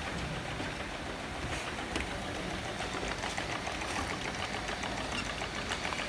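Automatic filling, capping and labelling line running: a steady mechanical noise with rapid, light, even ticking, clearer in the second half.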